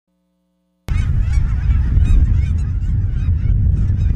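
A large flock of geese honking and calling over one another, with a steady low rumble underneath. The calling starts suddenly about a second in, after near silence.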